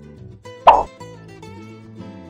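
Light background guitar music with one short, loud cartoon-style plop sound effect about two-thirds of a second in.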